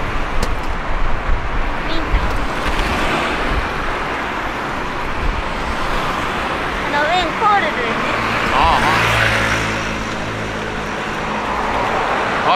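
Road traffic on a multi-lane city street: a steady rumble and hiss of cars going by, swelling about nine seconds in as one vehicle passes close.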